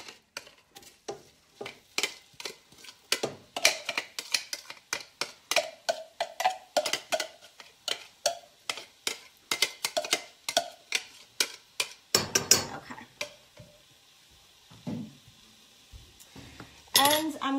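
Repeated sharp taps and knocks of a utensil against a glass chopper bowl, about three a second, some with a short glassy ring, as chopped onion is knocked out into a pot. Near the end a louder clatter, then the tapping stops.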